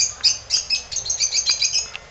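Small birds chirping: a quick string of short, high notes, several a second.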